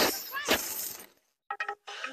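Television set being smashed: glass shattering and breaking, with a sharp impact about half a second in, the crashing dying away by about a second in.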